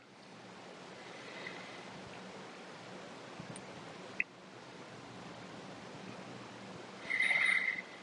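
Faint steady room tone with a low hum, broken by a single sharp click about four seconds in and a brief higher-pitched sound near the end.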